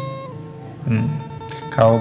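Background music: a plucked-string melody on held notes, with a man's voice beginning to talk near the end.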